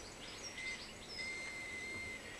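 Faint outdoor ambience with a bird's thin high chirps and a longer steady whistle that starts a little over a second in.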